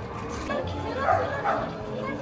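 A high, whimpering voice giving two short wavering cries, about a second in and again half a second later.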